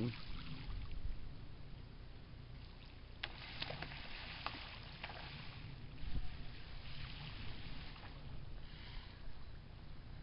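Faint water sounds of light splashing and lapping at the surface of a lagoon full of schooling baitfish, with a few soft ticks in the middle and a dull thump about six seconds in.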